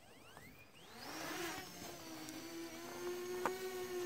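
Parrot Anafi quadcopter's motors and propellers spinning up for an automatic takeoff, a rising whine that levels off after about a second and a half into a steady hovering hum. A single click sounds near the end.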